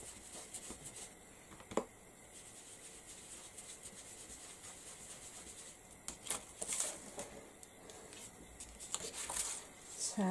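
Faint swishing and dabbing of a small blending brush working ink through a stencil onto card. There is a light tap about two seconds in, and louder brush swishes and paper rustling come in short clusters in the second half and again near the end.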